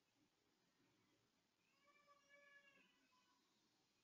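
Near silence, with one faint, drawn-out pitched call about two seconds in, lasting about a second.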